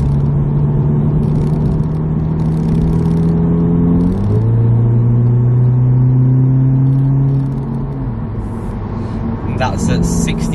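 Audi S3 8V's turbocharged four-cylinder engine, exhaust resonator deleted, heard from inside the cabin in efficiency mode as the car accelerates up a motorway slip road. The engine note climbs slowly, drops sharply with an upshift about four seconds in, then climbs again before easing off near the end.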